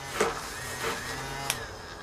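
Electric makeup brush spinner running, spinning a makeup brush dry in its bowl with a steady hum, then stopping with a sharp click about one and a half seconds in.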